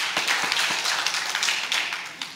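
Congregation applauding: many hands clapping at once in a steady patter.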